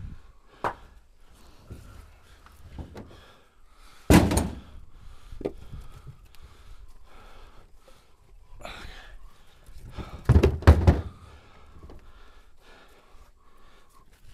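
Dry black locust firewood rounds being handled and stacked: a few hard wooden thunks and knocks as rounds drop onto the pile or the pickup bed. The loudest come about four seconds in and as a pair around ten to eleven seconds in, with quieter shuffling of wood between them.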